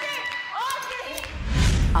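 A few brief vocal exclamations with light knocks, then a deep booming music bed swells in during the last half-second.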